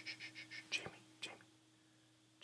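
Faint whispering with quick breathy pulses, then two soft clicks, over a steady low hum.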